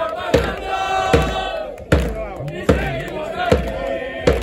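A group of football supporters chanting together in unison to a bass drum struck steadily, five beats a little under a second apart.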